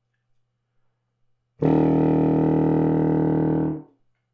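Contrabassoon playing one sustained, very low note, a quarter tone between E1 and F1 at the bottom of its range, fingered with a key half-depressed. The note starts about a second and a half in, is held for about two seconds, and fades off just before the end.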